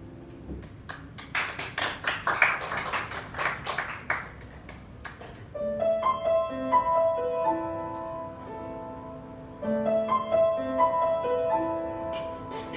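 A short burst of scattered hand-clapping from a small audience. About halfway through, an upright piano begins a new jazz phrase with single notes and chords that ring on.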